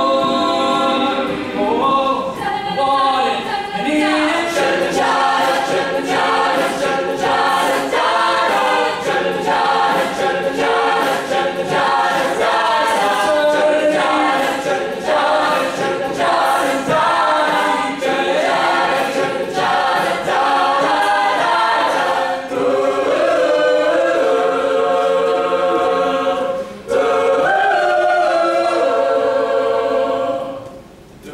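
Mixed a cappella group singing: a male and a female lead voice over sung backing parts from the rest of the group, with no instruments. The voices break off briefly about 27 seconds in, then carry on.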